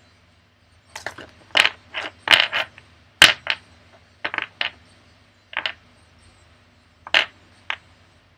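A deck of tarot cards being shuffled by hand: about a dozen short, sharp card snaps and slaps at an irregular pace, the loudest about three seconds in.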